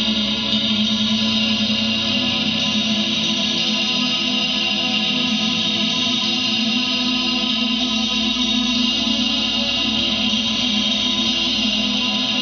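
Fender Strat electric guitar through a Roland JC-40 amp, run through chorus, delay and reverb pedals including a TC Electronic Corona set to a tri-chorus TonePrint: a steady, sustained ambient wash of held, shimmering notes with no distinct picking attacks.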